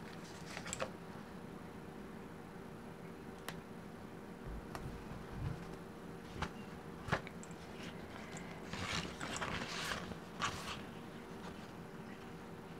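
Paper sticker sheets being handled on a tabletop: scattered light taps and clicks, then a longer paper rustle about nine to ten and a half seconds in.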